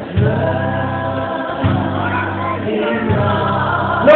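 Live gospel singing: a lead singer at a microphone with a group of backing singers, over steady low held notes.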